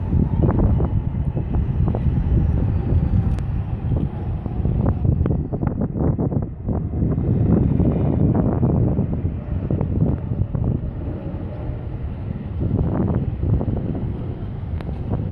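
Wind gusting across the phone's microphone: a loud, low rumble that swells and eases from moment to moment.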